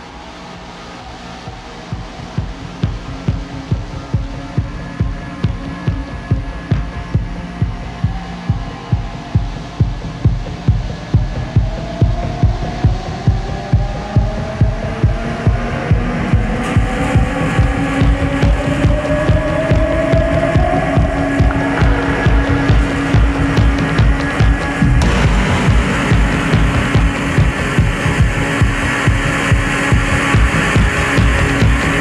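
Live techno played on homemade piezo-amplified electroacoustic instruments. A steady kick-drum pulse of about two beats a second comes in about two seconds in, rising pitch glides sweep up in the middle, and the sound thickens with added treble layers twice in the second half.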